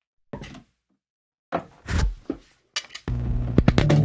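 Handling knocks and thunks as an electric bass is picked up. About three seconds in, a 1965 Fender Precision Bass strung with Fender 9050 flatwound strings starts sounding a sustained low note.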